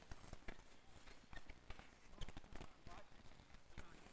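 Street hockey sticks and ball clacking on a hard tennis court, a fast, irregular run of sharp clacks and taps, with faint players' voices.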